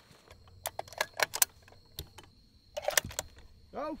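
A scatter of sharp clicks and light clatter from a shooting chronograph and its sky-screen arms being handled and set up, with a short rustling burst about three seconds in.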